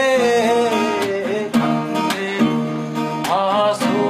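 A man singing while strumming an acoustic guitar, the guitar strummed in a steady rhythm. The sung line is heard early on and comes back near the end.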